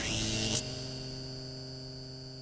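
A hissing whoosh that cuts off sharply about half a second in, leaving a steady electrical hum with several held tones that slowly fades.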